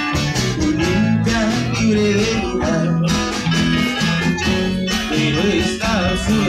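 Live band playing a song: strummed acoustic-electric guitar over electric bass and a drum kit with cymbals.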